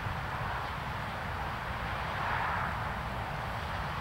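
Steady outdoor background noise: a low rumble with a broad hiss that swells a little about halfway through, with no distinct knocks or impacts.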